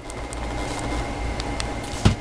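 Steady low background hum with a faint high tone, and a few faint clicks.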